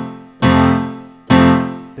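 Digital keyboard with a piano sound: full chords struck hard and left to ring out, a new chord about every second. It is a heavy, key-banging touch played as an example of how not to play the pulse.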